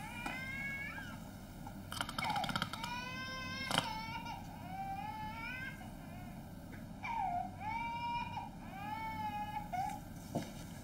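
A baby crying in a series of wavering wails, with a few short clicks about two and four seconds in.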